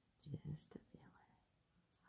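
A short whispered, pained exclamation with a breath, about a quarter of a second in, as the needle is pushed into her chest port, followed by a couple of faint clicks.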